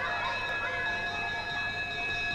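A crowd of boys shouting and chattering as they rush out of a classroom, over a steady high-pitched ringing tone.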